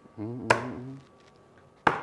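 Casino chips clacking as they are set down on the roulette layout: two sharp clicks about a second and a half apart, the second louder, with a brief murmured voice after the first.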